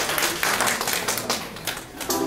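A small audience applauding, with dense irregular hand claps that thin out and die down near the end.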